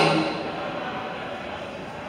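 The end of a man's amplified speech through a public-address system, dying away in a large hall's reverberation, followed by a pause filled with low, steady room noise.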